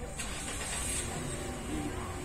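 A motor vehicle running nearby: a rushing noise comes in suddenly just after the start, over a steady low rumble, with faint voices underneath.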